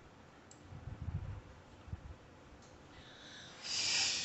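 A faint scissor snip and a few soft handling bumps, then near the end a schnauzer shaking its head. The shake is a rising rustle of ears and coat and is the loudest sound.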